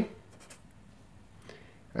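Felt-tip marker drawing short strokes on paper: a few faint scratches in the first half second and another couple about a second and a half in.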